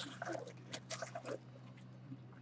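Trading cards and a sealed cardboard card box being handled on a tabletop: a few short scuffs and taps in the first second and a half, then quieter, over a steady low hum.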